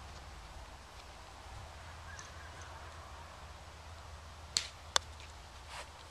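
Faint low rumble, then two short clicks about half a second apart near the end. The second click is sharp and the loudest: a putter striking a golf ball on the green.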